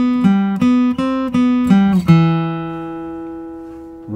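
Steel-string acoustic guitar playing a single-note lead line with a pick: a quick run of about eight picked notes, some joined by short slides up the neck. About two seconds in, a last note is picked and left ringing, slowly fading away.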